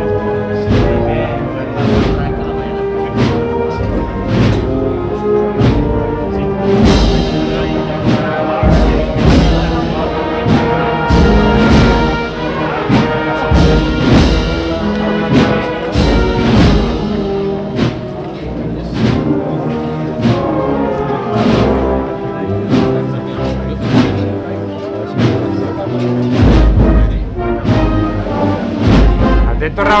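Processional brass band playing a slow march, with sustained brass chords over a steady beat of drums about once a second.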